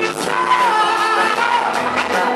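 Live pop-rock band playing, with a man singing lead into a microphone, heard from among the audience in a concert hall.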